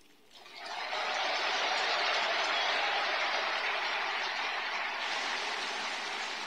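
Audience applauding, swelling up within the first second and holding steady, easing slightly near the end.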